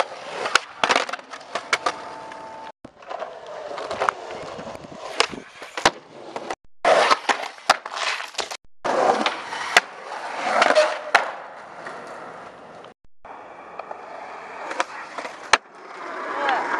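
Skateboard wheels rolling over concrete and asphalt, with many sharp clacks of the board striking the ground. It comes as several short clips, and the sound cuts out for a moment between them.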